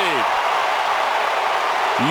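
Ballpark crowd cheering steadily, a loud, even roar, as the home team's go-ahead run scores.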